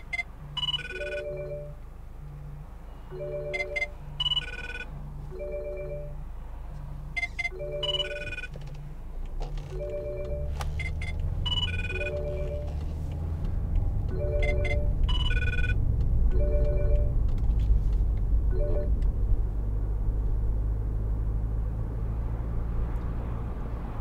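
A mobile phone ringtone played through the car's speakers over the hands-free Bluetooth system: a short melody of pitched notes repeating over and over, stopping a few seconds before the end. About ten seconds in, the car's diesel engine rumble comes in and grows louder as the car gets under way.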